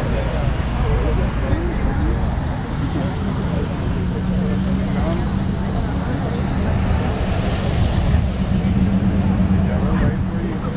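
A large engine running steadily over a low rumble, its hum strengthening about three seconds in, with faint voices in the background.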